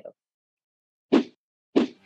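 Two short, dull pops about two-thirds of a second apart, each over in a fraction of a second.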